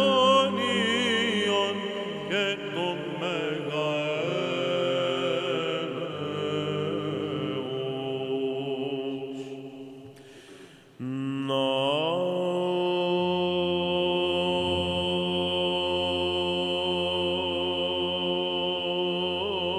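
Byzantine chant sung by a cantor, ornate and melismatic over a low held drone note. The line fades away just before the middle, then a new phrase begins about eleven seconds in with a rising glide into long sustained notes.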